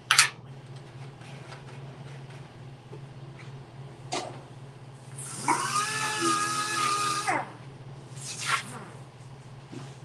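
Air-powered orbital sander working a steel motorcycle fuel tank: a short hiss burst right at the start and another about eight and a half seconds in, with a two-second run in the middle where the sander's whine rises, holds steady over a hiss of air, then falls away as it stops. A steady low hum runs underneath.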